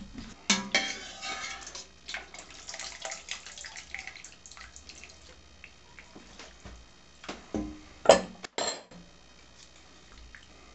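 Cooked elbow pasta being scooped from its cooking water and dropped into a stainless steel skillet of tomato sauce: dripping water, soft wet plops and clinks of a metal utensil against the pan. Two louder knocks come near the end.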